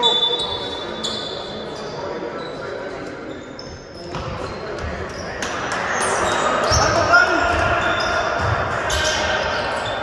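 A basketball bouncing on an indoor court during a game, with players' and spectators' voices echoing in a large hall. The activity gets louder about halfway through.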